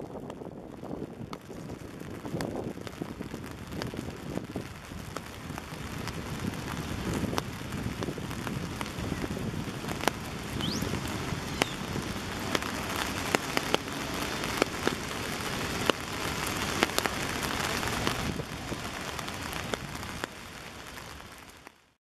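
Steady rain falling, with many close raindrop ticks over a low rumble. A brief rising chirp about ten seconds in, and the sound fades out near the end.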